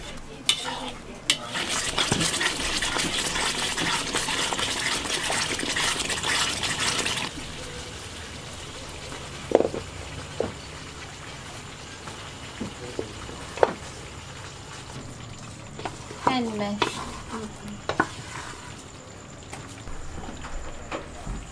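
Spice paste sizzling in a wok while a metal spatula scrapes and stirs it, a loud dense hiss that cuts off sharply about seven seconds in. After that there is a quieter stretch with a few light knocks.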